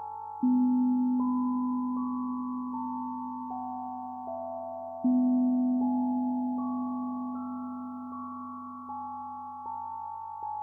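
Ambient electronic music made of pure, soft tones. A slow high line of held notes changes about every three-quarters of a second over a low note that enters suddenly about half a second in and again about five seconds in, each time fading slowly.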